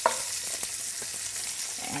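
Hot oil sizzling in a frying pan as chopped onion is tipped in, with a sharp knock right at the start.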